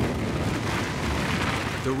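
Sound-design impact effect for the Earth crashing through a rogue planet's rings: a hit, then a dense rumbling roar of debris that swells through the middle.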